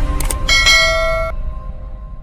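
Subscribe-button animation sound effects: a couple of quick clicks, then a bright bell-like ding about half a second in that cuts off sharply, over a low rumble of intro music fading away.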